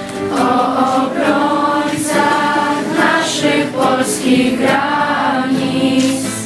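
A large group of young voices singing a song together, accompanied by strummed acoustic guitars.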